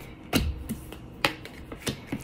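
Tarot cards being dealt from the deck onto a hard tabletop: three sharp taps, the first and loudest about a third of a second in.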